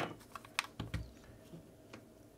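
Light plastic clicks and a dull knock from a partly opened Xbox One controller being handled and set down on the work mat, with a sharp click at the start and a few lighter ones in the first second.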